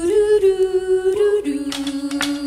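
Women's voices singing a wordless held note, unaccompanied, with the drums dropped out; the note steps down about one and a half seconds in, and a higher harmony line joins near the end.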